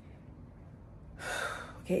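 A woman's audible breath, about half a second long, coming a little over a second in after a quiet pause, just before she speaks again.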